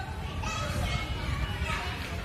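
Children playing and calling out in high voices, with a steady low rumble underneath.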